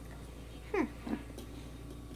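Two short voice-like cries about a third of a second apart, each sliding steeply down in pitch, over a faint steady low hum.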